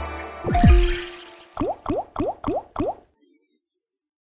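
Online slot machine game sound effects: a watery plop with a falling pitch about half a second in, then five quick rising bubble-like blips as the reels land, after the tail of the game's win music fades out.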